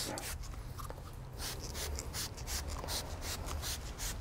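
Hand trigger spray bottle misting a fabric protector onto a cloth car seat: a quick series of short, quiet hissing spritzes.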